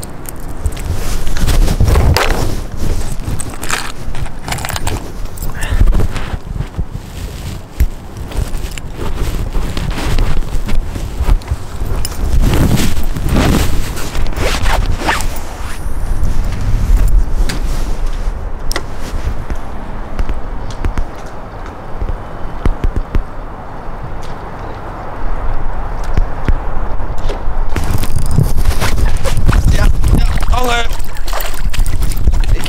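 Loud, irregular rustling and scraping of clothing rubbing against a body-worn camera's microphone, with bursts of low rumble as the wearer moves.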